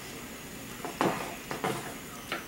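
A few short, light knocks and clicks from painting gear being handled, the sharpest about a second in and two more soon after.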